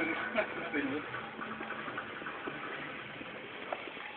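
Faint voices in the first second, then a steady low background hum.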